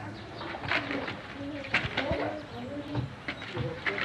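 Pigeons cooing in short low calls, with a few sharp knocks and clatters scattered through.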